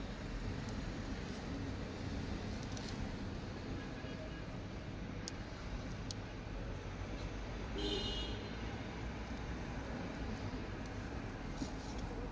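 Low, steady background hum with a few faint ticks.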